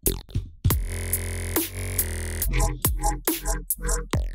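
Electronic dubstep-style loop playing back: a weird freeform bass patch from the Vital synth, its formant filter, phaser and stereo spread randomized. It holds one long note, then stutters in short chopped notes, with short hits that drop quickly in pitch around it.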